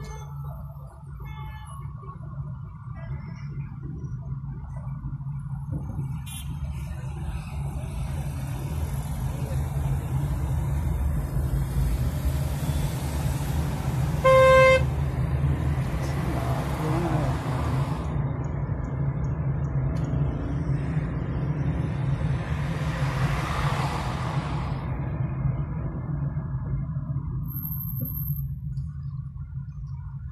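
Road noise heard from inside a moving car: a steady low rumble, with other vehicles swelling past twice and a car horn tooting once, briefly, about halfway through.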